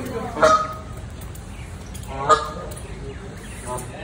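Canada geese honking: two short, loud honks, one about half a second in and one a little after two seconds, then a fainter call near the end.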